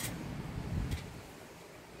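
Thunder rumbling low, dying away about a second in.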